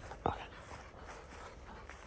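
A short spoken word about a quarter second in, then only faint, steady background noise.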